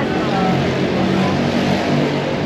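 Busy outdoor market ambience: passers-by talking in the background over a steady low hum of road traffic engines.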